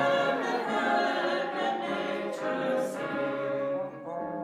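Mixed choir of men's and women's voices singing slow, sustained chords, with wind-band accompaniment; the sound thins briefly near the end.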